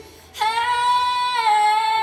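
A female singer holding one long high sung note, coming in about a third of a second in after a short pause and stepping down slightly in pitch about halfway through.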